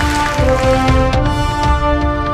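Television show transition jingle: electronic music with held synth notes stepping in pitch over a pulsing bass beat.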